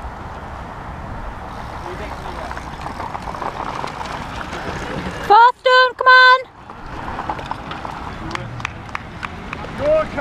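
Steady outdoor noise broken about halfway through by three loud, short, held shouts from a spectator cheering. A scatter of sharp ticks follows.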